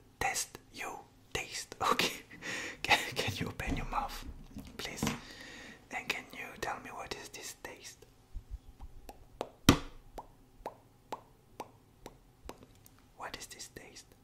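Close, breathy ASMR whispering for about eight seconds, then a run of light clicks and taps with one sharper click near ten seconds in.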